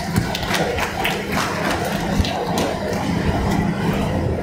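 Audience applauding: a dense, even spread of many hands clapping, with a steady low hum underneath.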